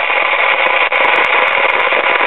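Sears Silvertone model 5 AM tube radio putting out a loud, steady hiss of static from its speaker, with scattered sharp crackles, a 'thunderstorm' sound. It is the sign of silver migration in the built-in mica capacitors of its IF transformer, which leak voltage from the primary to the secondary winding.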